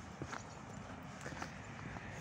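A few faint, irregular footsteps on a thin layer of snow over paving, over a low outdoor hiss.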